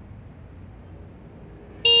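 Quiet room tone, then near the end a motorcycle horn suddenly starts sounding one steady, loud note, blown as a warning by a rider whose brakes have failed.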